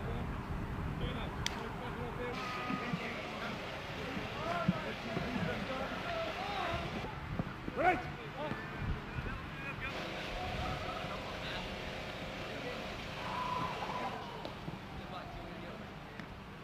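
Footballers' distant shouts and chatter across a training pitch, with one sharper call about eight seconds in, over a low rumble of wind on the microphone.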